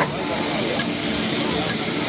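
Fried rice with pork sizzling on a hot flat-top griddle as a cook turns and scrapes it with a metal spatula. The hiss grows brighter about halfway through, with a few short scrapes of the spatula on the steel.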